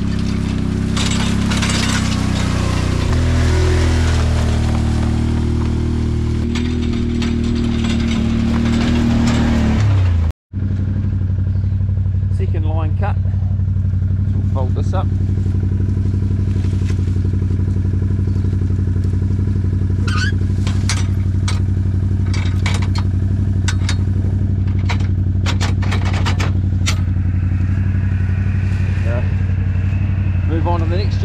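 Can-Am quad bike (ATV) engine driving through a kale crop, its pitch shifting with the throttle, then after a cut idling steadily. Occasional sharp knocks and clinks over the idle in the second half.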